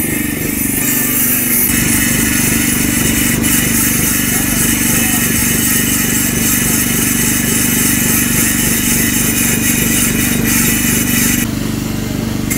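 Electric angle grinder grinding the carved letters of an inscription off a polished granite slab, a steady high whine and hiss, over the steady running of a portable petrol generator that powers it.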